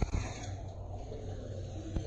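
Steady low rumble of seawater moving in a sea cave, with a short knock right at the start.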